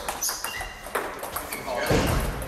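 Table tennis balls clicking off bats and tables, several rallies at once in a large hall, mixed with short high squeaks and background voices.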